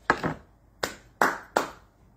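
Four sharp hand claps, the first right at the start and three more in quicker succession from just under a second in.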